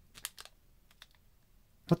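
A few faint, short clicks and crinkles of a clear plastic team bag being handled as the trading card inside is turned over, mostly in the first half second and once more about a second in.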